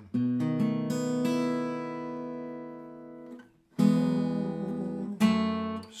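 Acoustic guitar played fingerstyle, working through a short lick that moves to the A chord and back to E. Notes pinched together ring out and fade for about three seconds, then after a short stop two more chords are struck about a second and a half apart.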